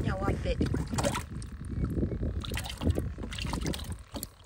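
Brief indistinct voices over an uneven low rumble.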